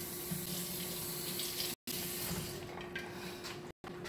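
Kitchen faucet running into the sink as the crockpot lid is rinsed under it: a steady rush of water that thins out past the middle. The sound cuts out for an instant twice.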